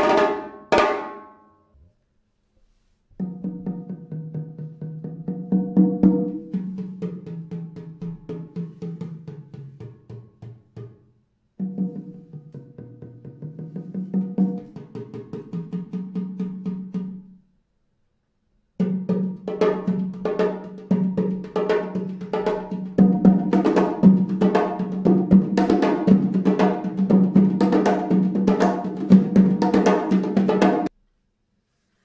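Remo modular hand drums: a stick-played passage stops about a second in, and after a short pause come three passages of fast drumming with a deep tone, split by brief pauses. In the first two passages the deep tone bends lower and comes back up. The last passage, two drummers playing with their hands, grows louder partway through.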